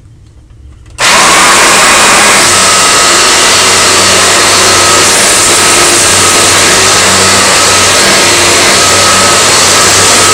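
Eureka Powerline 10-amp upright vacuum cleaner switched on about a second in, then running loud and steady with a thin high whine over the motor noise while it is pushed across a hard floor.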